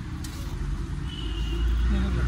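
A low, steady rumble that grows stronger about halfway through, with a brief faint high tone just past the middle.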